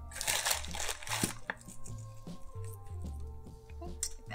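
Maldon flaky sea salt crushed between fingertips and sprinkled, a crackly crunching during the first second or so, with a fainter crackle after. Background music with a low bass line runs underneath.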